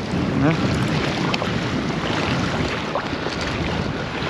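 Steady wind buffeting the microphone over waves washing against the granite jetty rocks.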